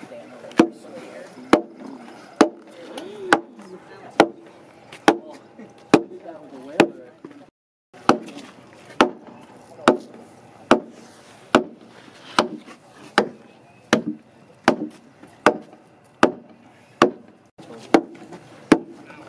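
A timber framer's wooden mallet (beetle) striking the end of a wooden beam over and over at a steady pace, a little more than one blow a second, driving a mortise-and-tenon joint closed. The blows break off briefly about halfway through.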